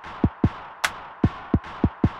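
Electronic music beat with no vocals: drum-machine kick drums with a falling pitch in a syncopated pattern, about three to four hits a second, and a single sharp snare or clap hit near the middle, over a steady hiss-like synth layer.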